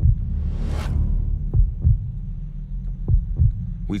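Deep bass thumps in pairs, like a heartbeat, about every second and a half over a low steady drone. A whoosh swells and fades in the first second.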